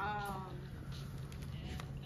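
A brief falling 'ooh'-like vocal exclamation from a person at the start, lasting about half a second, over a steady low hum, followed by a few faint taps.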